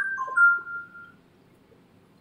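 A short electronic chime of three steady notes: a high one, a lower one just after, then a middle one held for about a second before it stops.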